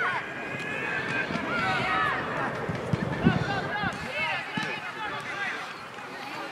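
Football players calling and shouting to each other across the pitch, many high-pitched voices overlapping, with one thud of a ball being kicked about three seconds in.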